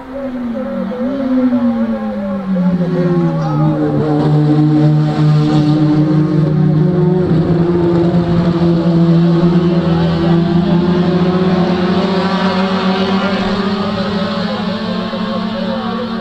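Racing saloon car engines running hard. The engine note falls in pitch over the first three seconds, then holds a steady high pitch, loudest around the middle.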